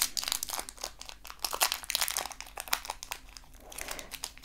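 A candy's foil-lined wrapper being twisted and pulled open by hand: a rapid run of crinkles and crackles that thins out near the end.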